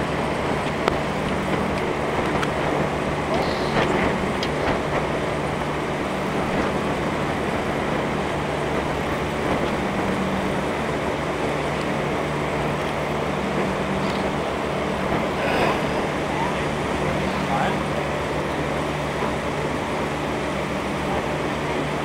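A steady engine hum, holding even low tones, under a constant wash of noise.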